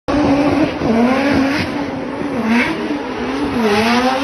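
Drift car sliding sideways under power, its engine note dropping and rising again every second or so as the throttle is worked, over the hiss and squeal of spinning, smoking tyres.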